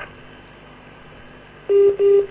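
Telephone line tone: two short steady beeps at one mid-low pitch, back to back, starting about one and a half seconds in, with faint line hiss before them.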